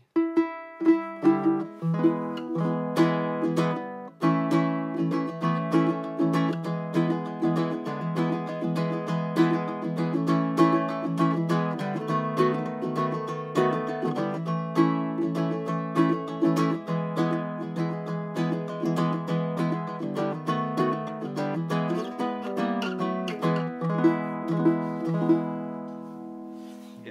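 Baritone ukulele with a Port Orford cedar top and curly walnut back and sides being played: a continuous run of plucked notes and chords, with a brief break about four seconds in.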